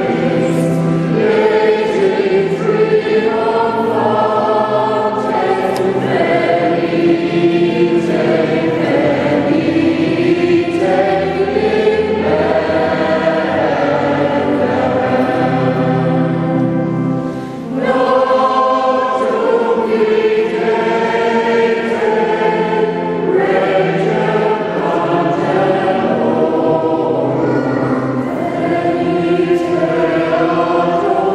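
Mixed choir of men and women singing a Christmas carol in a church, in sustained phrases with a brief breath between phrases a little past halfway.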